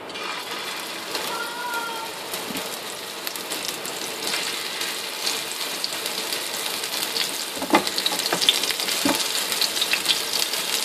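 Beef-mince gola kababs sizzling in hot oil in a non-stick frying pan as they are laid in one by one to shallow-fry. The crackling sizzle grows louder as more kababs go in, with a couple of sharp clicks near the end.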